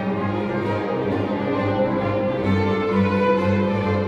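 String orchestra playing classical music, violins over steady, pulsing low notes from the cellos and basses.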